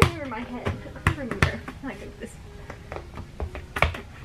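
A ball being tossed, bounced and caught, making several sharp thumps, with a short laugh at the start and background music playing throughout.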